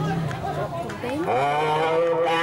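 Chanting voices through a microphone and PA: after some broken vocal sounds, a voice glides upward about a second in and settles into a long, steady intoned note, the start of a ceremonial chant.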